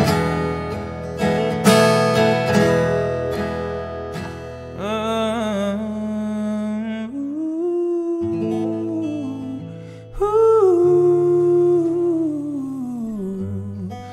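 Tanglewood acoustic guitar strummed in chords. From about five seconds in, a man's voice comes in with a slow, gliding melody over sustained chords.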